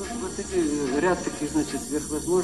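A wavering pitched sound that keeps sliding up and down over a steady hiss.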